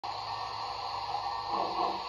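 Model Great Northern R-1 steam locomotive's onboard sound system playing steam sounds through a small speaker: a steady hiss and hum that grows louder about three quarters of the way in.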